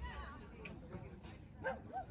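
A dog barking a couple of times, the loudest bark near the end, over distant voices.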